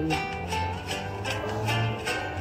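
Instrumental backing music with plucked guitar playing between sung lines of a song.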